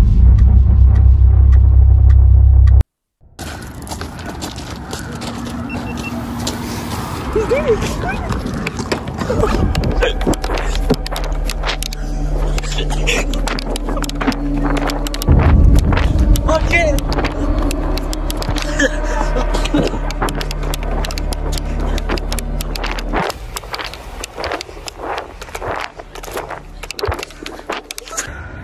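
A loud, deep boom lasting about three seconds. After it come rustling and handling noise, low voices, and a car engine running steadily for about twelve seconds before it drops away.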